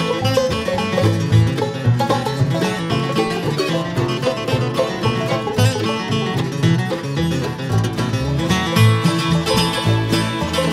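Acoustic bluegrass band playing an instrumental break between sung verses: banjo, mandolin, acoustic guitar, fiddle and upright bass, over a steady bass beat.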